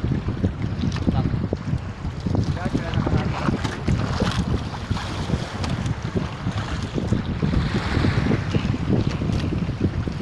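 Wind buffeting the microphone on a small outrigger fishing boat at sea, with water lapping at the hull and scattered short knocks.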